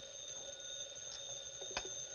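Desk telephone bell ringing in one long steady ring, with a faint click near the end.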